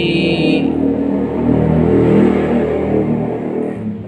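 An engine running, growing louder to a peak about two seconds in and then falling back, with its pitch wavering.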